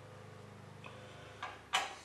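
Light metal clicks, then one sharper, short click-scrape near the end, from a height gauge scriber and small steel blocks being handled on a steel surface plate during layout. A low steady hum runs underneath until about three-quarters of the way through.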